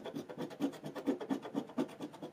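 A coin scratching the coating off a paper scratch-off lottery ticket in quick, even strokes, about six a second.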